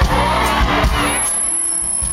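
Live band and vocalists played through a concert PA, heard from within the audience, with a singing voice over the band in the first second. The bass drops out briefly in the second half.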